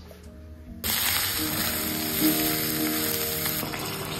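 Red tomato-pepper stew sizzling as it fries in a pan. The sizzle starts suddenly about a second in and goes on steadily, with background music over it.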